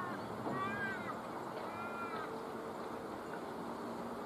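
Bird calling: a few drawn-out calls, each rising and then falling in pitch, in the first half, over steady outdoor background noise.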